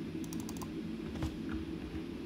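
A few light computer keyboard clicks, a quick cluster shortly after the start and a single one about halfway through, over a steady low hum.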